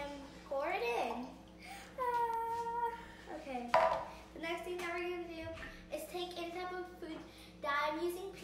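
A young girl's voice vocalizing without clear words, including one held sung note about two seconds in. About four seconds in, a single hard knock as the measuring jug is set down on the stone counter.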